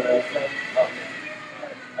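Small electric robot drive running with a faint steady high whine as the wheeled keg robot rolls across the floor, under people talking.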